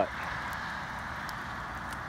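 Light rain falling outdoors: a steady soft hiss with a few faint ticks.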